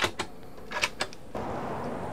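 A few light clicks and knocks from a wooden cabinet door and its latch being handled, about four within the first second. After that a steady outdoor hiss of open air takes over.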